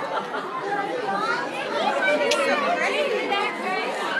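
A group of young children talking at once: overlapping chatter with no single voice standing out.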